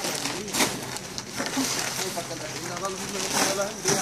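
Men's voices talking in the background, with a few sharp thumps as heavy sacks are handled and set down during hand-loading of a flatbed trailer.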